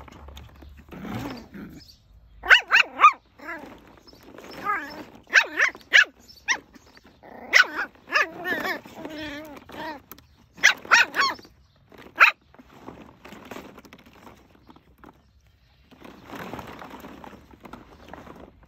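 Nine-week-old Bolonka puppies barking and yapping at play, short high yaps coming in quick runs of two or three, with quieter gaps between.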